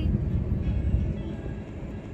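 Low, steady rumble of a car's engine and road noise heard inside the cabin, slowly fading toward the end.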